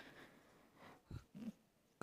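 Near silence in a pause of speech, with a few faint, short soft sounds a little after one second in.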